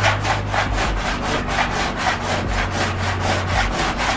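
Metal body file scraped back and forth across a VW Beetle's sheet-steel body panel in quick, even strokes, about five a second. It is file-marking: the file skims the high metal and leaves the sunken, dented spots unmarked so they can be found and worked out.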